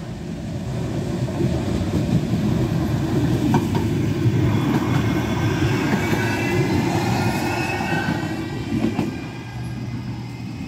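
A Manchester Metrolink M5000 tram passes close by: a rising, heavy rail rumble with a high whine over it as it goes past, and a couple of sharp clicks from the wheels on the track.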